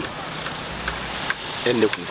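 Insects chirring in a steady, high-pitched drone, with a short vocal sound near the end.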